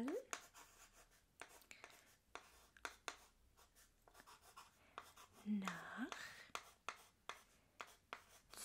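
Chalk writing on a small chalkboard: a faint run of short ticks and scratches. There is a brief soft rising vocal sound at the start and again about five and a half seconds in.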